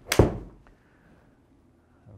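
Golf iron striking a ball off a hitting mat into a simulator screen: one sharp crack just after the start that dies away within half a second, followed by a faint tick.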